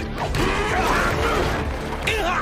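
Anime fight-scene soundtrack: background music mixed with clattering impact and scuffle sound effects.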